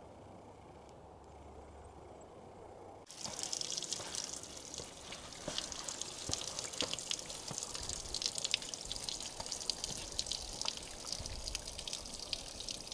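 Water dripping and splashing onto rock, many irregular drops over a steady wet hiss. It starts suddenly about three seconds in, after a stretch of faint quiet.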